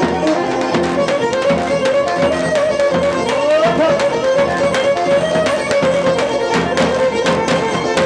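Live folk dance music: a bowed string instrument plays a wavering, ornamented melody over steady drum beats.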